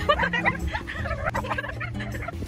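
Girls laughing in quick, choppy bursts, with background music underneath.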